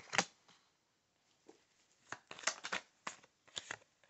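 Tarot cards being handled and drawn from the deck: a sharp card snap just after the start, then a quick run of flicks and slaps from about two seconds in.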